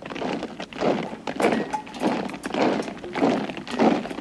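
A steady tread of heavy steps, about two a second, each a short crunching thud, with no music.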